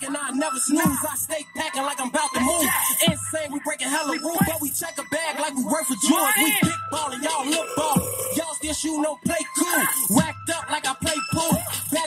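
Hip hop track playing: a rapper's fast vocals over a beat.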